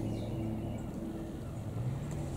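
A low, steady engine hum.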